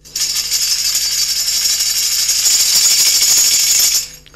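A percussion rattle shaken continuously, giving a dense, hissy jingling that cuts off suddenly at the end. It serves as a sound effect while a shadow puppet comes down from the house window to the stage.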